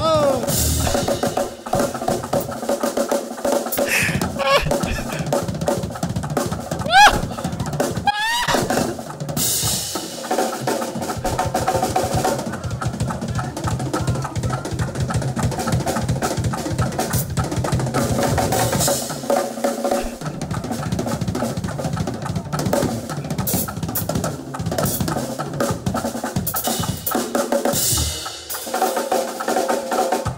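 Two drummers on two full drum kits playing together in a fast drum shed: dense fills across snare, toms, bass drum and cymbals. A keyboard plays sustained chords underneath, with two rising pitch bends about a third of the way in.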